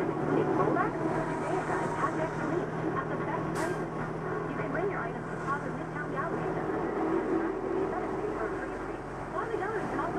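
Radio talk playing inside the vehicle's cab over the engine's steady low hum, which fades about seven seconds in.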